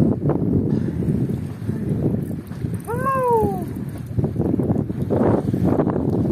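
Wind buffeting the microphone, with one short meow-like call about three seconds in that rises quickly in pitch and then slides down.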